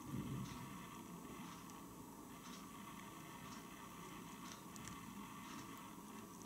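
Faint, wet ticking of giant African land snails rasping at orange pulp as they feed, with a few soft clicks about once a second over a low hiss. A soft low bump comes just after the start.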